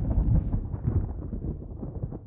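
Low rumble of an explosion sound effect dying away, with a light crackle, fading steadily.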